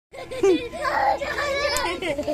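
Young children's voices talking and calling out over one another, high-pitched and excited.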